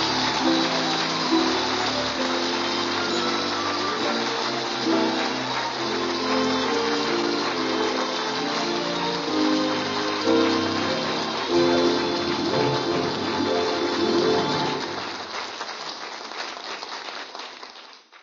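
Music bridge from a radio comedy broadcast, a run of melodic notes that closes the scene and fades out over the last few seconds.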